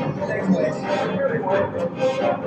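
A man's voice speaking through a concert hall's sound system, with the orchestra faintly sustaining notes underneath.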